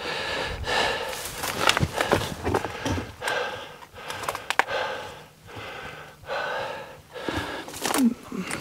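A man breathing heavily with repeated breaths while pushing through dry brush, twigs and leaves rustling and crackling.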